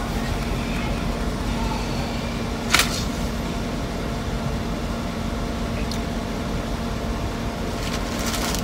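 Steady hum of an idling car heard inside the cabin, with one sharp click about three seconds in and a fainter one near six seconds.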